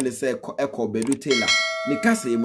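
A bell-like ding that starts about two-thirds of the way through and rings on steadily, over a voice talking.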